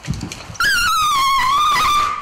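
A dog whining: one long, high whine that starts about half a second in and slides slowly down in pitch.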